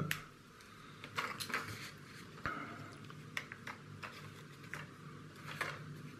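Scattered light clicks and taps of small plastic model-kit parts being handled, about ten in all, over a faint low hum.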